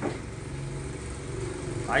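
A motor vehicle engine running with a low, steady hum; a man's voice comes back in right at the end.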